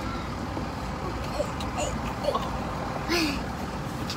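Steady low rumble and hiss of a running vehicle, heard from inside the car's cabin.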